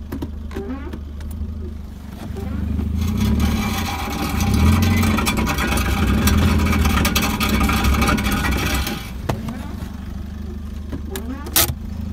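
A car engine running at idle, heard from inside the cabin as a steady low hum. From about three to nine seconds in, a louder rushing noise joins it, and a single sharp click comes near the end.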